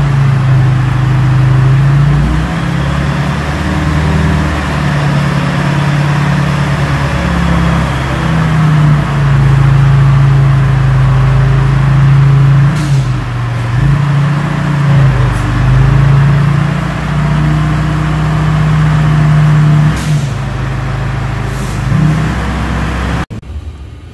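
Tow truck engine running at idle, a loud steady low hum that wavers slightly in pitch and level, cutting off abruptly near the end.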